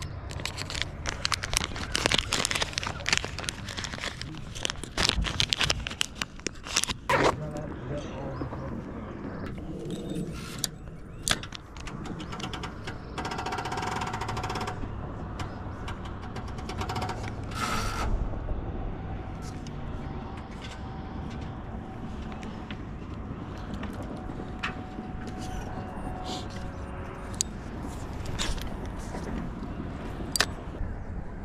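Close handling of a plastic bait bag: crinkling and clicking, densest in the first several seconds, then quieter scattered handling noise as a soft-plastic swimbait is rigged, over a low steady rumble.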